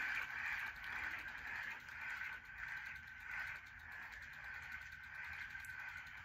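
Small handheld electric fan running close to the microphone: a faint, steady whir.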